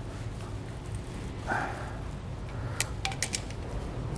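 Wire strippers working on a small insulated wire: a short scrape about a second and a half in, then a few light, sharp clicks near the end, over a steady low hum.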